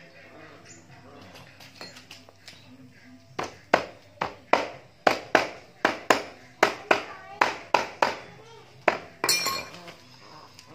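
A hammer tapping a rubber dust seal down into the top of a motorcycle front fork tube: about fourteen sharp taps, roughly two a second, starting about three and a half seconds in, with a brief clatter near the end.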